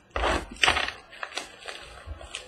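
A trading-card box being opened by hand: two louder crinkling, rustling bursts of packaging in the first second, then lighter clicks and scrapes as the contents are handled.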